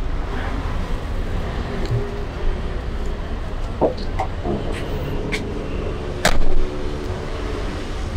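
Steady low rumble of outdoor background noise with faint voices in the distance, and one sharp knock about six seconds in.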